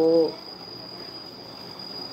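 A steady, high-pitched insect trill continues on one even pitch after a woman's voice trails off at the very start.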